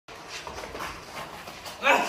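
Faint background voices, then near the end a man's short, loud cry of strain or pain as he is pulled up in a staged fight scene.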